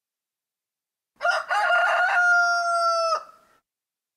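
A rooster crowing once: a cock-a-doodle-doo that starts about a second in and ends in a long held note, cutting off about three seconds in.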